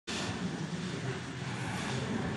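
Steady background hiss and room noise, with no distinct events.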